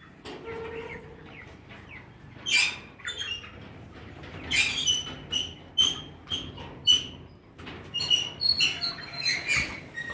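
A flock of young broiler chickens peeping, with short high calls coming irregularly, sparse at first and more frequent from about halfway through.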